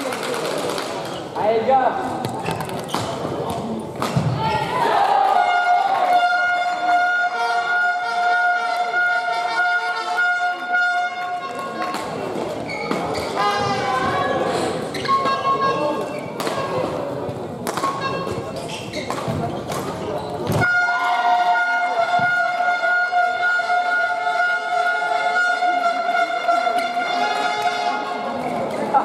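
A steady high-pitched note is held for about seven seconds, then held again from about three-quarters of the way through, over a murmur of voices in a large hall. A few sharp knocks come in between the two notes.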